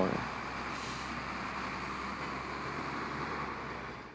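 Steady city street traffic noise, with a brief hiss about a second in, fading out at the end.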